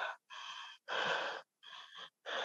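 A woman breathing hard in three short, noisy gasps, heard over a video call.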